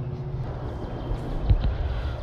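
Steady low outdoor rumble, with a single dull thump about one and a half seconds in.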